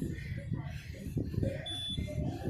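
Star Trac exercise bike console giving one short, high beep near the end as its 20-minute workout timer runs out and it switches to cool-down. Voices murmur in the background.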